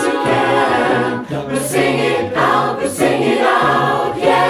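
Mixed virtual choir singing an a cappella pop arrangement in several-part harmony, with a sustained low bass part underneath.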